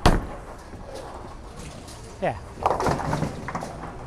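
One sharp, loud crash of a bowling shot right at the start, ringing out briefly, with the hum of the bowling alley behind it.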